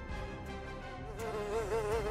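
Buzzing of a flying insect, a thin drone that wavers up and down in pitch and grows louder from about a second in.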